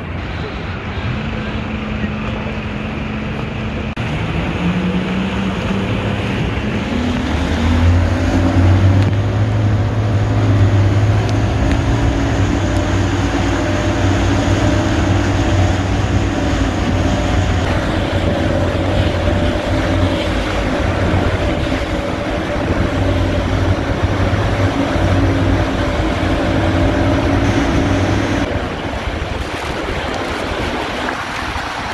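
Motorboat engine pushing an inflatable boat upriver. Its pitch rises over a few seconds about four seconds in, holds steady at speed, then eases off near the end. Rushing water and wind noise run under it throughout.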